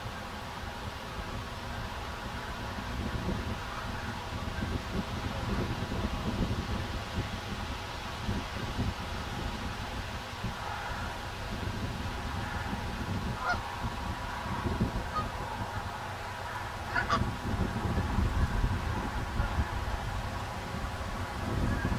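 Canada geese giving a few short honks in the second half, over a steady low rumble.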